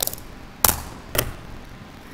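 Three sharp knocks or thumps: one at the start, the loudest a little over half a second in, and a third just past a second.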